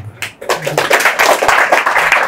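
Audience clapping and applauding, starting about half a second in and running on as a dense patter of many hands.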